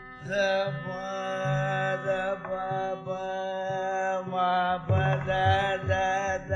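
Carnatic classical music: an ornamented melodic line, sliding and oscillating between notes, enters a fraction of a second in over a steady drone, with mridangam strokes accompanying it.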